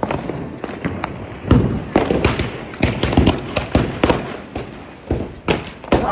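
Firecrackers bursting in a quick, irregular run of sharp bangs, some louder and some fainter, the loudest cluster between about one and a half and three and a half seconds in.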